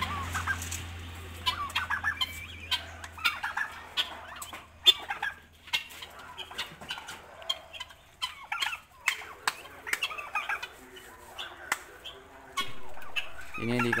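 Helmeted guinea fowl and turkeys calling in a pen: many short clucks and chattering calls one after another, with sharp clicks mixed in.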